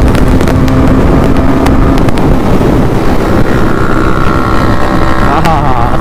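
Motorcycle engine running at road speed, with heavy wind rumble on the microphone. A steadier, higher engine note holds from about halfway through until near the end.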